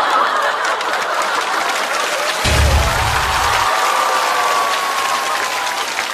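Studio audience applauding and laughing. A short added music sting plays over it, with a low bass note about two and a half seconds in that lasts about a second.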